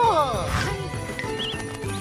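A cartoon character's wordless wail of dismay, a wavering rise-and-fall cry near the start, over light background music.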